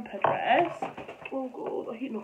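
Quiet, indistinct speech, a voice that sounds muffled and thin, with no clear words.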